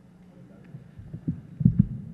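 Dull low thumps of microphone handling noise, several in quick succession starting about a second in, over a steady low hum.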